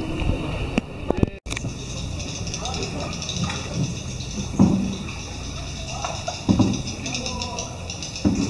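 Indistinct voices of people in a cave, in short scattered bursts, with a sudden brief dropout in the sound about a second and a half in.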